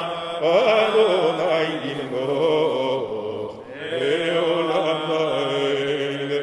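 A man chanting Hebrew prayers in a slow liturgical chant: long, wavering held notes sliding between pitches, with a short break about three and a half seconds in.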